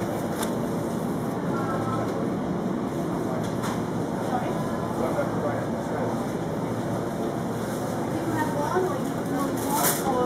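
Supermarket background: a steady murmur of hum and noise with faint, indistinct voices, broken by a few knocks, the loudest near the end.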